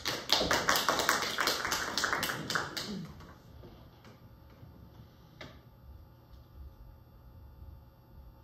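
Audience applause with distinct separate claps, dying away about three seconds in.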